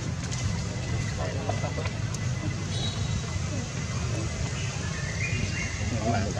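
A steady low rumble with faint, indistinct human voices in the background.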